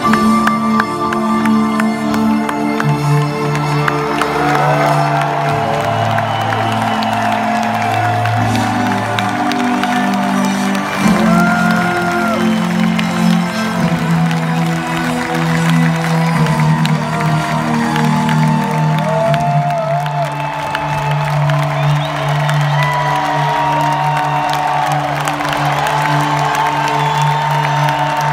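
Live band music heard from within a stadium crowd: slow, sustained synthesizer chords shifting every couple of seconds, with the audience cheering over them.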